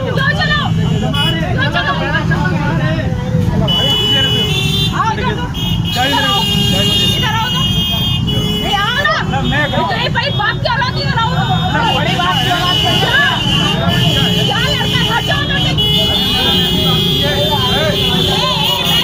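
Idling motorcycle and vehicle engines in stalled street traffic under many overlapping voices, with long held horn blasts a few seconds in and again from about twelve seconds on.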